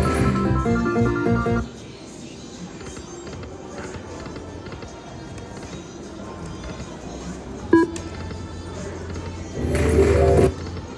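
Video slot machine playing electronic jingle tones for about the first second and a half, then a quieter stretch over a low steady hum, broken by a single sharp click about eight seconds in. Another jingle starts just before the end.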